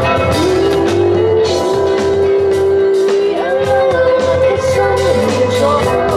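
Live band playing: a woman sings long held notes that bend in pitch, over electric bass guitar and a drum kit with steady cymbal hits.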